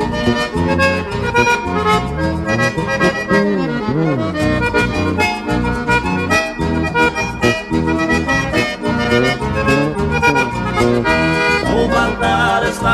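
Instrumental break of a 1980s sertanejo song: an accordion carries the melody over guitar and bass with a steady beat, and no singing.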